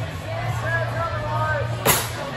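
A single sharp thud near the end as a gymnast's feet land a skill on the balance beam, over a background of crowd chatter and music.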